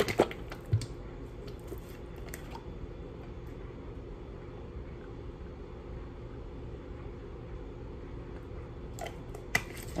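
A bottle of marinade being shaken, a quick cluster of sharp clicks at the very start, then a steady low kitchen hum with a few faint taps while it is drizzled, and a couple more clicks near the end.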